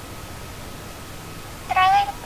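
A single short, high-pitched call near the end, over faint steady background hiss.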